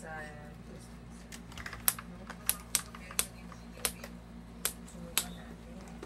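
Foam toy darts making a run of seven sharp clicks, unevenly spaced over about three seconds.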